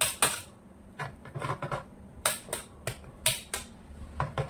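Metal palette knife scraping and smacking against whipped cream on a cake as it is spread around the top and sides. It makes a string of short, sharp scrapes at irregular intervals, about two a second.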